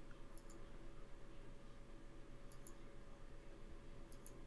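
Computer mouse button clicks: two quick pairs of faint clicks about two seconds apart, over a low steady room hum.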